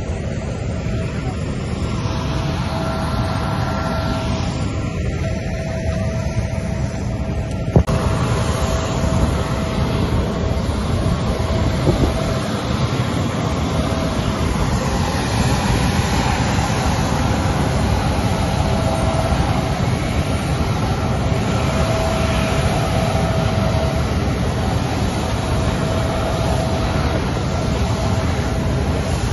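Steady running noise of a jet airliner on an airport apron: a continuous roar with a faint steady whine over it. It grows a little louder after a sharp click about eight seconds in.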